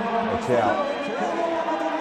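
Men's voices speaking or calling out, heard over the steady background noise of an arena.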